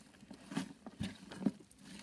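A few short rustles and soft scuffs as gloved hands pull apart a thyme plant and its root ball.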